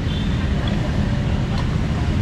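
Steady low rumble of road traffic and motorbike engines on the street.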